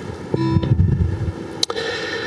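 Acoustic guitar: notes picked about a third of a second in, left ringing, with a sharp click near the end.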